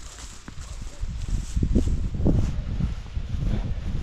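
Footsteps walking through grass and loose soil: a run of soft, irregular thumps that grow louder about a second in.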